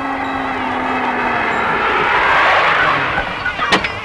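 A car driving up, its sound swelling to a peak mid-way and easing off, with a sharp knock near the end.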